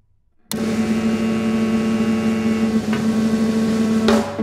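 Contemporary ensemble music with live electronics: after a moment of near silence, a loud, dense, noisy sustained sound with several steady held pitches starts suddenly and holds, broken near the end by a sharp attack.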